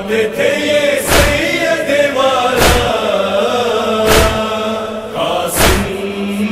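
A chorus of voices chants a drawn-out Muharram nauha lament tune, with a heavy beat about every one and a half seconds keeping slow time.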